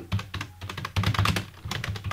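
Computer keyboard typing: a quick, uneven run of key clicks as a word is typed into a search box.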